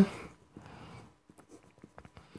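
Marker pen writing words: faint short scratches and ticks of the tip on the surface.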